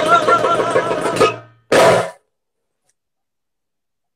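A man's singing voice holds a long final note with vibrato over steady hand-drum strokes, fading out about a second and a half in. A short loud burst follows near two seconds, then the sound cuts out to complete silence.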